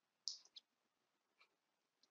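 Near silence broken by a sharp click about a quarter second in and a fainter click just after, like a computer mouse click advancing a presentation slide.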